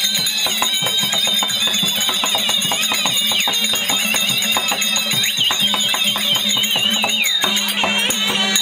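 Therukoothu folk ensemble playing dance music: a shrill wind instrument plays a high, wavering, trilling melody over drums beating a quick rhythm and a steady harmonium drone.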